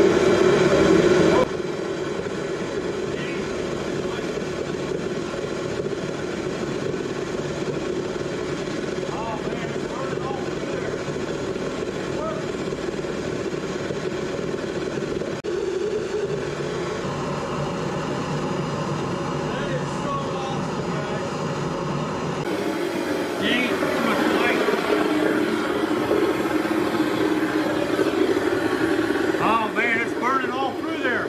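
Home-built tube burner running, a steady roar of forced air and flame through the stainless combustion tube, its fuel fed in at a tangent; it is louder for the first second or so, then settles lower.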